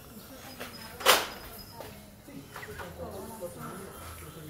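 Faint, indistinct speech, with one short, sharp hissing burst about a second in.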